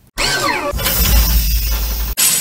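Channel intro sound effect: a sudden swoosh with gliding tones that swells into a loud, noisy crash-like hit over a deep bass rumble, cutting off sharply at the end.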